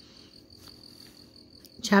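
A quiet pause with a faint, steady high-pitched tone running through it. A woman's voice starts again near the end.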